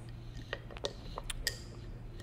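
A handful of light clicks and taps as an aluminium Manfrotto 504PLONG quick-release plate is handled and fitted against the tripod foot of a large telephoto lens.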